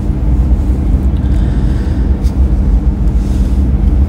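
Steady low rumble with a faint low hum over it: the background noise of a large indoor shopping mall, with no voices close by.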